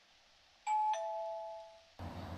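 Two-tone ding-dong doorbell chime: a higher note, then a lower one a fraction of a second later, ringing out and fading over about a second.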